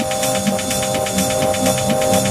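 Peak-time techno track in C minor at 126 BPM: a held synth chord over fast, steady hi-hat ticks and a bass pulse on each beat.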